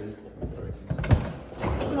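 Refrigerator door being shut: a thud about a second in, with a few lighter knocks from handling the doors.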